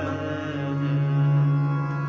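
Harmoniums holding steady notes between sung lines of Sikh kirtan, with a low held note coming in about half a second in.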